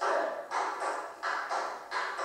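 Tap shoes striking the floor in a steady rhythm of quick, sharp-starting strikes, a little under three a second.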